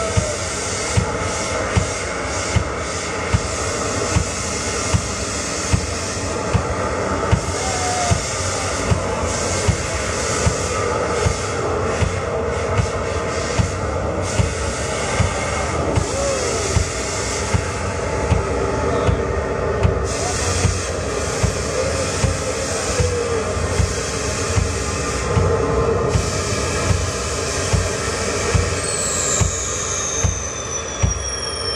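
Live band music from a keyboard and a drum kit: a steady heavy beat, struck about every three-quarters of a second, under a dense, droning, distorted keyboard sound. A high falling whine comes in near the end.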